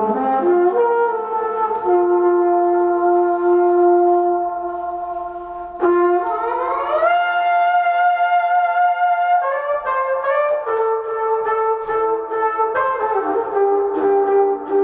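Trumpet playing sustained notes, several brass tones sounding at once, layered with loops and effects. About six seconds in, the pitch glides smoothly up by about an octave and holds. From about ten seconds in it breaks into shorter, shifting notes.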